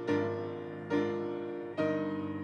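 Piano instrumental: slow chords struck a little under a second apart, each ringing and fading before the next.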